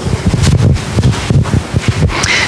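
Handling noise on a handheld microphone: irregular low rumbles and soft knocks as it is gripped and carried.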